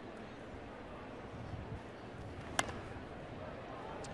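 Steady ballpark crowd murmur, with one sharp crack of a baseball bat fouling off a pitch about two and a half seconds in.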